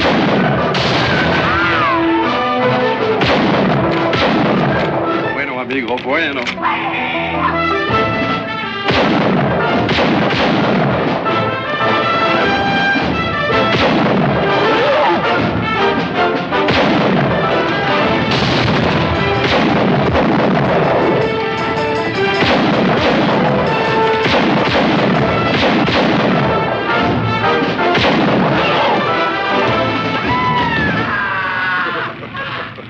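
A film battle soundtrack: rapid, repeated rifle and revolver gunfire over an orchestral action score, with shouting mixed in throughout.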